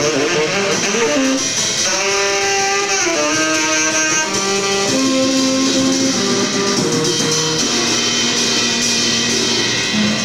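Saxophone blowing a run of held notes that step between pitches, over a drum kit with cymbals washing steadily underneath.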